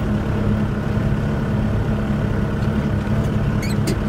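Tractor engine running steadily as the tractor drives over a muddy field track, heard close up from the cab, with a few light clicks near the end.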